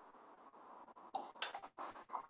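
Faint clatters and clinks: several short, sharp knocks in quick irregular succession, starting about a second in, over a low background hiss.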